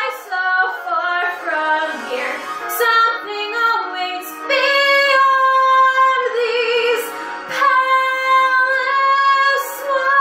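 A woman singing a Broadway show tune solo: a run of short notes, then long held high notes with vibrato through the second half.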